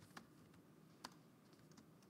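Faint typing on a computer keyboard: a short run of keystrokes, the sharpest about a second in.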